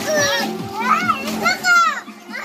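Young children's voices, high-pitched shouts and calls while they play in a pool, over steady background music.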